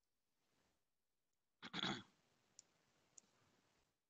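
A man clearing his throat once, about two seconds in, in otherwise near silence, followed by two faint clicks.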